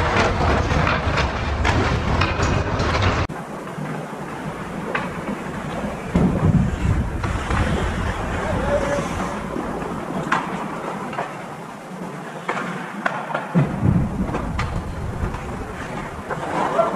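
Ice hockey play on a rink: skates scraping the ice, with sharp clicks of sticks and puck and an occasional shout from a player. A dense rushing noise fills the first three seconds and cuts off abruptly.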